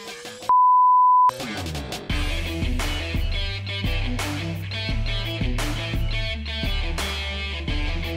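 A short steady high-pitched bleep, under a second long, near the start, with everything else cut out beneath it: a censor bleep. After it, rock music with a steady beat and bass.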